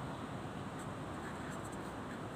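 Felt-tip marker writing on a sheet of paper, faint strokes over a steady background hiss.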